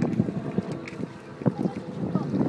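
Wind buffeting the microphone, mixed with water sloshing around a person wading waist-deep in a shallow lake.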